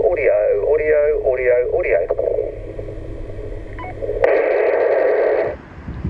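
A voice received over an FM transceiver's speaker on 446 MHz, thin and narrow-band with a low hum under it, ending about two seconds in. About four seconds in, the transmission drops and a loud burst of hiss plays for just over a second before the receiver's squelch cuts it off.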